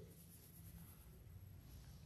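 Near silence: faint room tone during a pause in speech.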